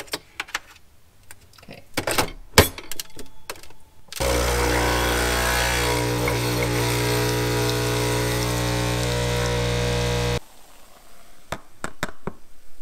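A few clicks and knocks as a lever-top capsule espresso machine is closed and started, then its pump runs with a steady buzzing hum for about six seconds as it brews, stopping abruptly.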